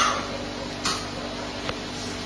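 Steady low background hum with one light click about a second in and a fainter tick near the end.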